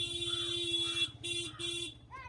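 Motorbike's electric horn held in one long steady buzz that cuts off about a second in, followed by two short toots, with the engine running underneath.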